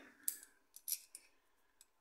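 A few light metallic clicks and clinks, about five short sharp ticks, as small steel engine parts are handled by hand during a timing-chain fit.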